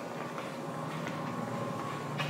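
Quiet indoor room noise: a steady faint hum with a few light taps.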